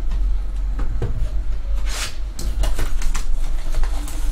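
Hands handling and opening a small cardboard trading-card box: scattered light knocks and rustles, with one sharper rustle about two seconds in, over a steady low hum.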